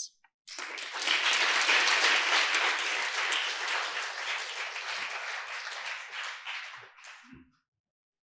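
Audience applauding, starting about half a second in, then fading and stopping shortly before the end.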